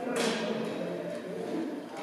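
Distant voices of building workers over the general noise of an outdoor construction site.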